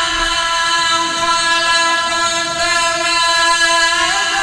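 A Quran reciter's voice holding one long vowel on a steady pitch, a drawn-out prolongation in melodic recitation.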